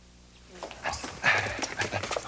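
Hurried footsteps on a hard floor, starting about half a second in, with a man's voice calling out over them.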